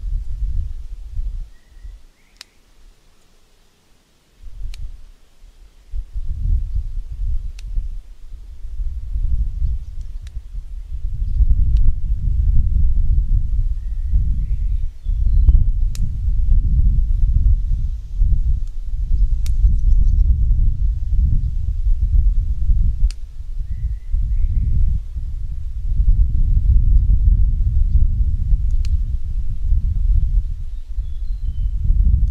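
Wind buffeting the microphone in uneven gusts, with a brief lull a couple of seconds in. Faint snips of scissors cutting basil stems come every few seconds.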